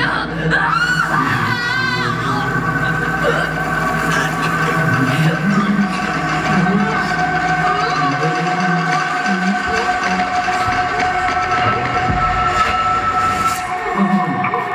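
Soundtrack of a promotional video played over a large hall's speakers: music with long held tones, with a wavering voice in the first two seconds.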